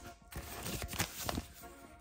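Paper rustling and a few short taps and clicks as a printed manual is handled and pulled from a fabric case, with faint background music underneath.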